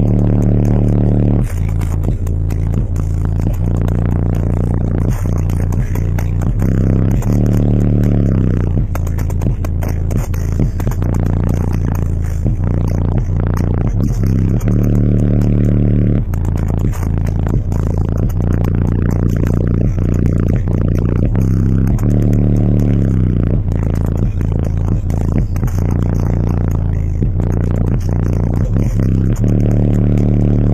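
Bass-heavy music played loud through two EMF Banhammer 12-inch subwoofers, heard inside the car: deep bass notes change pitch every few seconds. Scraping and rattling ride on the bass throughout.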